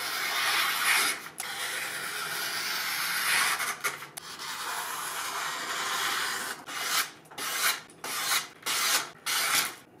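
Freshly sharpened deba knife slicing through a sheet of paper as a sharpness test: one long continuous cut for the first six seconds or so, then about six short, separate slicing strokes.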